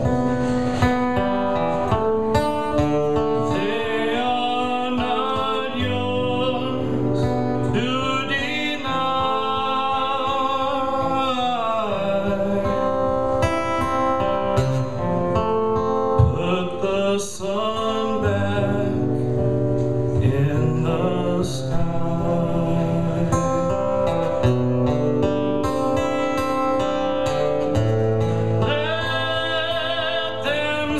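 A man singing over his own strummed acoustic guitar, a solo performance of a song.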